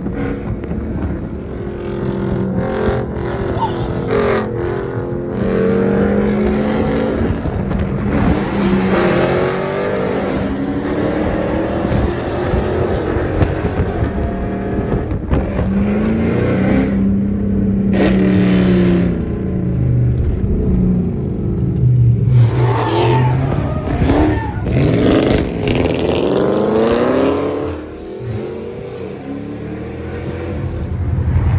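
Dodge Charger Hemi V8 accelerating hard, heard from inside the cabin. The engine note climbs again and again and drops back through the gear changes, with the heaviest run of revving a little past two-thirds of the way through.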